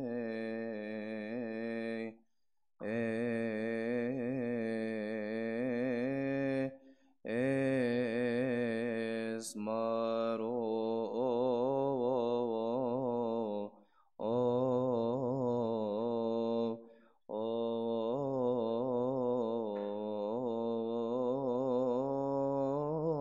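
A male voice chanting a Coptic Orthodox Holy Week hymn in long, drawn-out melismatic phrases, pausing briefly between them about every three to four seconds.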